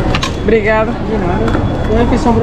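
A voice speaking briefly over the steady background noise of a busy eating area, with a few sharp clicks.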